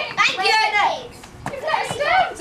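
Children's voices: chatter and calls from a group of kids, high-pitched and overlapping, dropping briefly about halfway through.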